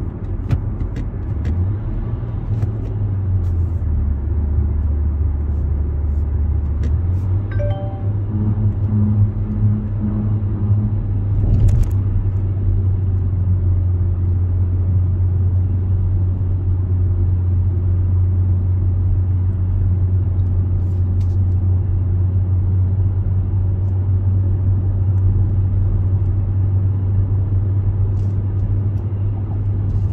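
Inside the cabin of a Kia Seltos at cruising speed: a steady low drone of engine and tyre noise, which dips lower a few seconds in and comes back up around seven seconds. There is one sharp click about twelve seconds in.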